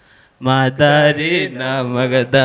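A man singing into a handheld microphone: after a short pause near the start, he holds long, wavering sung notes in one voice.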